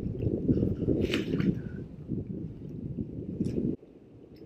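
Wind buffeting a head-mounted camera's microphone: an uneven low rumble that cuts off suddenly near the end, with a faint click about a second in.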